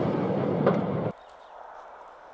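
Wooden railway passenger carriage rolling past close by, wheels rumbling with a sharp click from a rail joint. The sound cuts off suddenly about a second in, leaving only a faint outdoor background.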